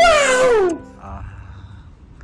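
A man's loud, high-pitched yell that falls in pitch and lasts under a second, over steady background music. Both stop about a second in, leaving a low outdoor rumble.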